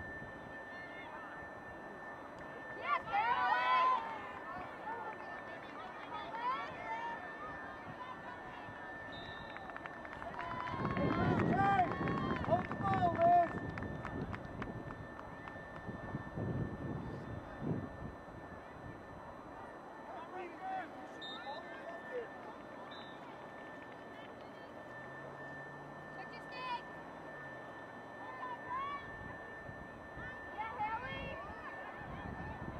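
Scattered shouts and calls from lacrosse players and sideline spectators, distant and outdoors, with a louder spell of several voices at once about eleven seconds in.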